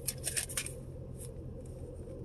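Paper crinkling and rustling in the hands, a quick run of sharp crackles in the first half-second or so and one more just after a second, over a steady low hum in a car's cabin.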